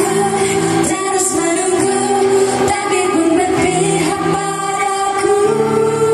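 Female voices singing a pop song with acoustic guitar accompaniment, amplified through a stage PA.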